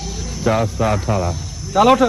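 Steady high-pitched chirring of insects, like crickets, running under a man's voice that calls to a cow in short bursts, once in the middle and again near the end.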